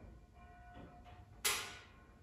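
A single short clack about one and a half seconds in, from a metal curtain pole being worked into its bracket; otherwise quiet.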